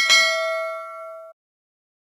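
Bell 'ding' sound effect of a subscribe-button animation: one struck bell tone ringing with several steady pitches together, fading and then cut off abruptly a little over a second in.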